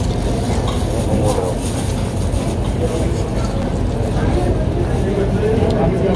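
Restaurant background noise: indistinct voices over a steady low rumble.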